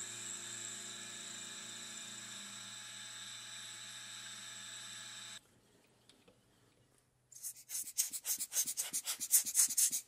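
Milling machine spindle running with a steady whine over a low hum. After a cut, about three seconds of rapid, irregular scratchy ticking, the end mill side-milling into brass.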